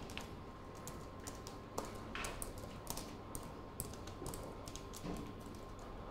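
Laptop keyboard being typed on: irregular runs of faint key clicks as shell commands are entered.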